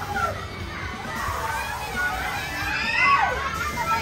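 A group of children shouting and shrieking over one another, several high voices at once, loudest about three seconds in.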